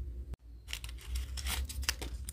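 Small pieces of paper crinkling and rustling as they are folded by hand, a run of quick crackles starting about half a second in and densest near the end.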